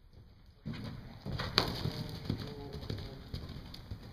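A horse's hoofbeats and landing thuds in soft indoor-arena footing as it jumps a fence and canters on, starting suddenly about half a second in, with one sharp knock about a second and a half in.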